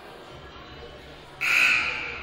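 Gym scoreboard horn sounding once, briefly, about one and a half seconds in, over a low murmur. It comes as the timeout clock passes 15 seconds, typical of the warning signal near the end of a timeout.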